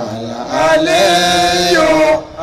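Islamic devotional chanting by a male voice, swelling about half a second in into one long held note.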